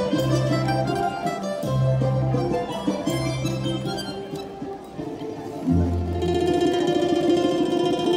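A Russian folk-instrument ensemble playing live: domras and balalaikas are plucked over a button accordion. Low bass notes come in short repeated phrases, the music dips about five seconds in, then a held low note and chord swell up from about six seconds.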